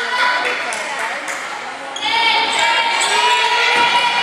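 A basketball is bounced a few times on a hardwood court as a free throw is set up, with voices echoing in a large gym. From about halfway a long, high call and more voices run on over it.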